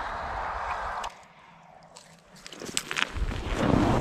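A steady hiss cuts off suddenly about a second in. After a near-quiet pause, footsteps crunch in packed snow, starting about two and a half seconds in and growing louder toward the end.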